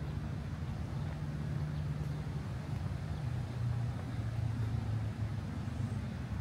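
A vehicle engine running with a steady low hum, its pitch dropping a little about halfway through.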